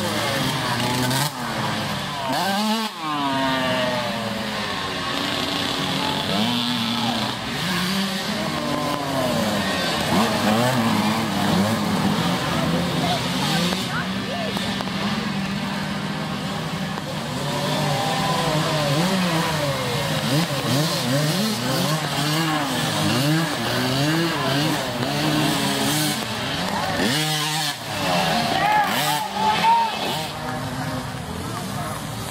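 Small youth dirt-bike engines revving up and down as the bikes ride a muddy trail, several at once, their pitch rising and falling. A bike sweeps past close about three seconds in and again near the end.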